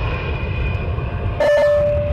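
Steady low rumble of a moving cable-car gondola ride heard from inside the cabin, with a held steady tone coming in suddenly about one and a half seconds in.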